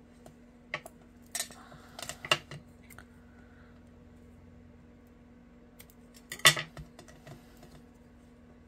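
Scattered light clicks and clinks as a roll of tear tape is handled and its tape pulled off over a craft mat. There is a cluster of them around two seconds in and a single louder knock about six and a half seconds in.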